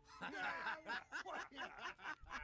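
Several men laughing together in a run of short chuckles: a gang of thugs laughing mockingly at someone.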